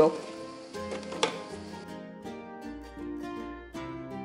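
Background music of plucked strings with held notes, and a single sharp knock about a second in, as the plastic lid goes onto a food processor.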